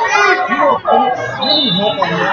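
Several voices overlapping, children's voices among them, talking and calling out at once with no clear words.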